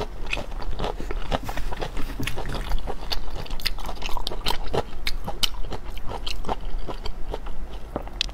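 Close-miked chewing of raw shrimp: a dense, irregular run of wet clicks and small crunches.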